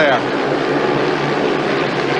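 Several speedway bikes racing on a shale track at full throttle, their single-cylinder methanol-burning engines making a steady, unbroken drone.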